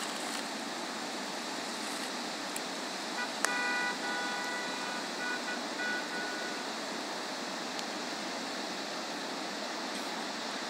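Steady rushing of a mountain river over a rocky bed. About three and a half seconds in, a pitched tone starts with a click and sounds on and off in short pieces until near seven seconds.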